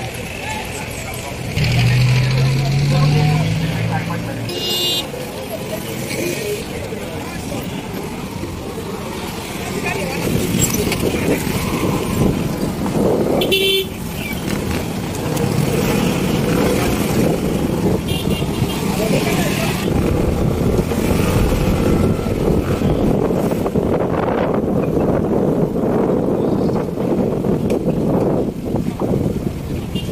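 Busy market-street traffic: motorcycles, tricycle taxis and cars running past, with background voices. Short horn toots sound about five seconds in and again around thirteen seconds, with a fainter one near eighteen seconds.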